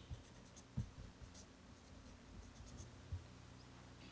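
Faint scratching of a marker pen on paper as a line is drawn and two Chinese characters are written by hand, with two soft knocks, one about a second in and one about three seconds in.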